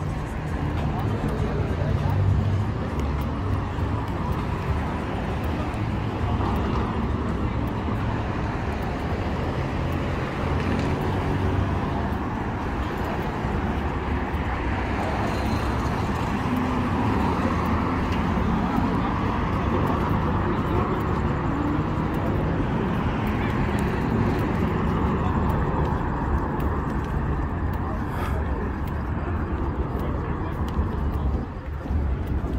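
Street ambience beside a busy road: steady passing car traffic mixed with people talking nearby.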